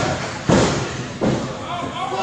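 Referee's hand slapping the wrestling ring mat during a pinfall count: two hard slaps about 0.7 s apart, about half a second in and just past a second in.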